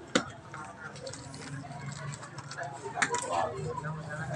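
A knife striking a durian's spiky husk: two sharp knocks, one just after the start and one about three seconds in, over faint background chatter.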